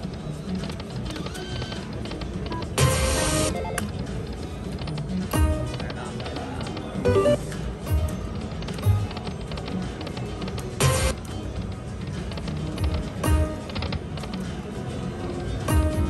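Aristocrat Dragon Link 'Autumn Moon' slot machine playing its electronic game sounds as the reels spin and stop: short chimes and jingles recur every two to three seconds, the loudest about three seconds in and again near eleven seconds, over steady casino floor noise.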